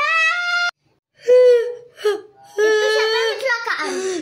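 A young girl's voice whining and whimpering in long, drawn-out crying sounds. The first cry breaks off abruptly less than a second in, and the cries start again after a brief pause.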